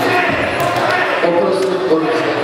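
Several voices shouting over one another in a hall, with a few dull thuds.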